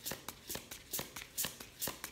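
A deck of oracle cards being shuffled overhand in the hands, a quick run of light card slaps about four times a second.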